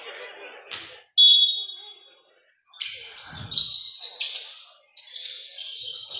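A loud, short, high-pitched tone about a second in, then rapid high squeaks of basketball shoes on the hardwood gym floor as play resumes.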